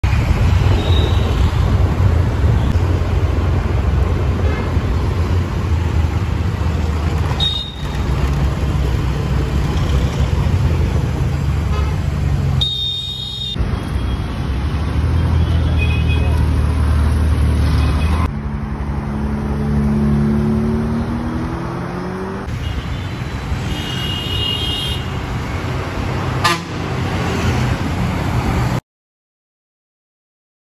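Busy street traffic with a heavy engine rumble. Vehicle horns honk about halfway through and again near the end. In one stretch an engine's pitch rises steadily as it pulls away.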